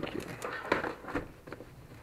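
Plastic bubble wrap rustling irregularly, with a few short sharp crackles, as hands grip and turn a wrapped package.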